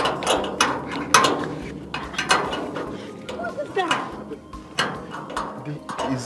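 A key being worked in a stiff, rusty lock on a metal door, with irregular metallic clicks and rattles. The lock is rusted and needs oil.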